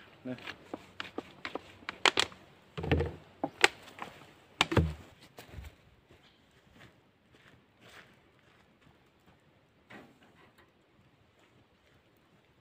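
Close handling noise: a quick run of sharp clicks and knocks, with two dull thumps in the first half. After that only faint scattered ticks and one more click near the end.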